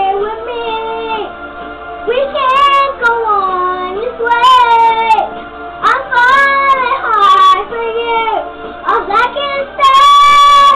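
A young girl singing, holding notes that slide up and down in pitch.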